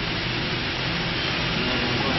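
Steady hiss of background room noise with a faint low hum underneath.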